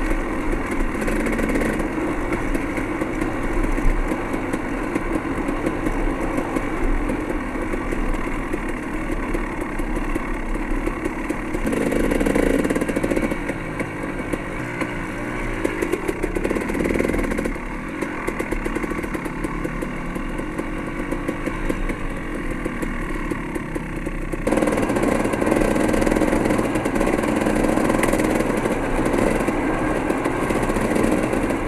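Dirt bike engine running while riding a rough gravel trail, heard from an on-board camera. The engine note and loudness change abruptly three times, where the footage is cut.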